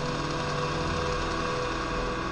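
Ambient electronic music: a sustained synthesizer pad chord with a hissy, buzzing texture, its low notes shifting about a second and a half in.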